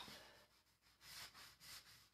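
Near silence, with faint rubbing from an applicator pad wiping wax off a painted wooden drawer front, twice in the second half.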